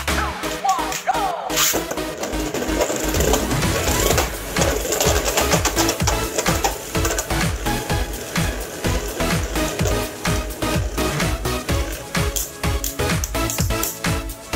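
Background electronic music with a steady beat, over two Beyblade Burst tops, Cho-Z Valkyrie and Crash Ragnaruk, spinning in a plastic stadium with a rapid rattle of clicks as they clash.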